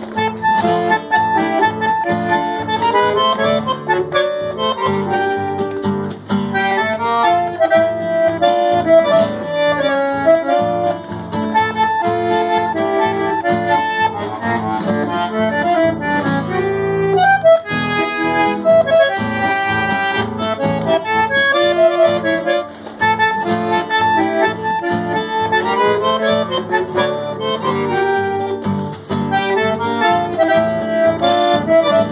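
Bandoneon playing a melody, with an acoustic guitar accompanying it.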